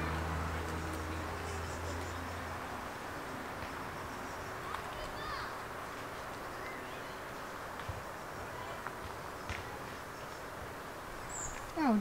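A small car's engine running as the Mini hatchback pulls away down the lane, its low hum fading out over the first two or three seconds. After that only faint outdoor background with a few faint chirps.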